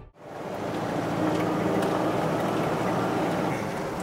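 Steady noise inside a moving car: a low engine hum and the rush of road noise, fading in over the first half second.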